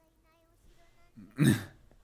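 A man's single short vocal burst, like a hiccup, about one and a half seconds in, over faint, quiet dialogue from the show playing in the background.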